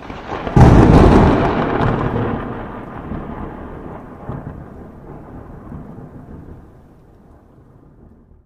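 A thunder-like boom sound effect: a short swelling rush, then a sudden loud crack about half a second in, rumbling and fading away over the next several seconds.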